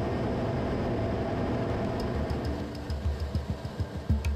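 Steady rushing jet noise as heard inside a fighter cockpit. Background music with a regular ticking beat and low pulses comes in about halfway and grows toward the end.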